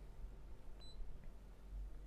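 A single short, high-pitched electronic beep a little under a second in, over a faint low hum.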